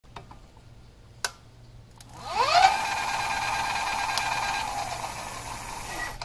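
A single click, then an electric bike's rear hub motor spinning up with a rising whine. It holds a steady high whine for a few seconds and eases off near the end.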